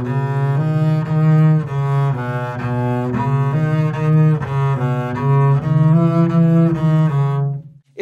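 Double bass played with the bow: a run of short notes, about two a second, climbing gradually through a three-note progressive A major scale. This is the primer version, with a separate bow stroke on each shift instead of slurring the three notes, and it stops just before the end.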